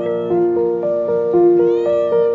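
Keyboard background music playing a simple stepwise melody, with a domestic tabby cat meowing once near the end: a short call that rises and then falls in pitch.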